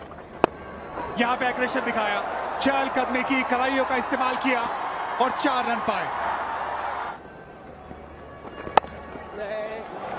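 Two sharp cracks of a cricket bat striking the ball, about half a second in and again near the end, with a man's commentary voice between them.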